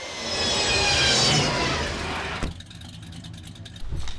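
Sound effect of the flying DeLorean time machine passing overhead: a rush of noise with several whining tones that fall slowly in pitch, swelling to a peak about a second in. It cuts off suddenly at about two and a half seconds, leaving a low hum.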